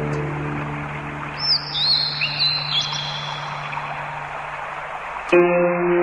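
A guzheng note rings out and fades over a steady rushing noise, with a few bird chirps about a second and a half in. A new plucked guzheng chord comes in near the end.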